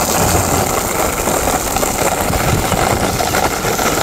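Plastic cruiser skateboard's wheels rolling over a rough dirt and gravel path: a steady, loud rumbling rattle, the ride so bumpy it jars the rider.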